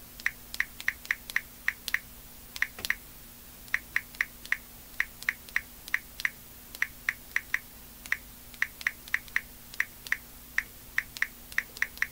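Smartphone on-screen keyboard click sounds as a text message is typed: short, sharp ticks in quick runs of three to six, several dozen in all, with brief pauses between runs.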